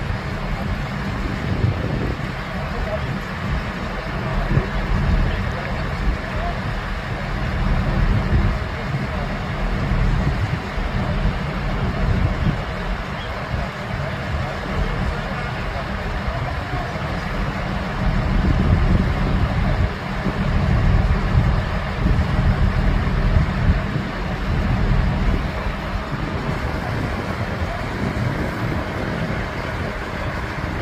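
Heavy construction machinery running, a steady low rumble with irregular swells, with wind buffeting the microphone.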